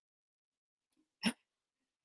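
Near silence, broken once a little past halfway by a single brief mouth sound, a quick catch of breath.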